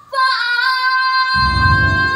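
A young girl singing a long held note into a microphone over a recorded backing track; the backing's low bass and beat come in about one and a half seconds in.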